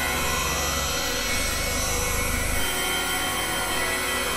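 Electronic music played on a virtual CZ synthesizer in a microtonal tuning (12 of 91-EDO): a dense, noisy, steady texture over low bass notes that change about a second in and again near three seconds in.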